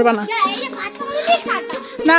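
A young child talking in a high voice, with steady background music underneath.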